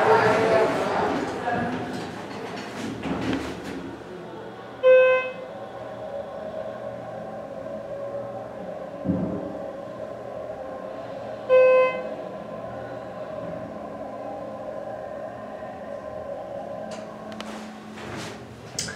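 Glass observation elevator car running between floors with a low steady hum. Its electronic chime beeps twice, about seven seconds apart, each beep a short single pitched tone.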